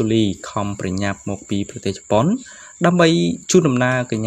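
A voice talking without pause, over a faint steady high-pitched tone.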